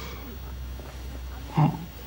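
A low, steady hum, then a short burst of a man's voice near the end.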